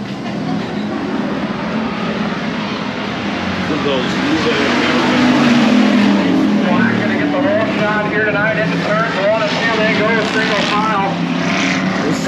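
Race car engines running on the track, getting louder from about four seconds in, with voices mixed in over them.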